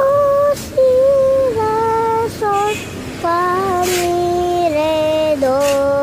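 A young child singing the note names down a descending scale, do-si-la-sol-fa-mi-ré-do, each note held, stepping lower in pitch note by note, over a steady background hiss.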